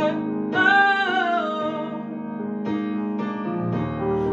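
Female voice singing a pop ballad over instrumental accompaniment: one long sung note that slides slowly downward in the first half, then mostly the accompaniment until the next phrase comes in near the end.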